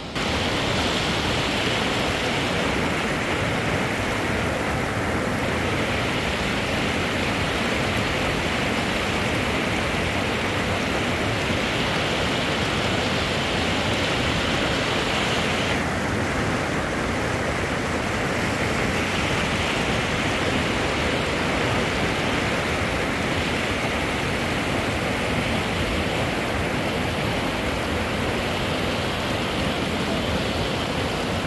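Fast mountain stream rushing over rocks: a steady, loud wash of water that begins abruptly.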